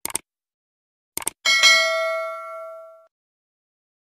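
Subscribe-button sound effect: a few quick clicks, two more clicks about a second later, then a single bright bell ding that rings out and fades over about a second and a half.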